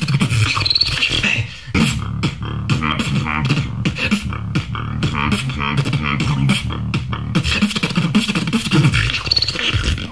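Beatboxing into a close microphone: a fast, continuous run of sharp percussive hits over a low buzzing throat bass, with a brief break about two seconds in.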